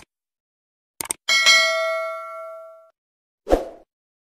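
Subscribe-button sound effects: quick mouse clicks, then a bright bell ding that rings out and fades over about a second and a half. A short, dull burst of sound comes near the end.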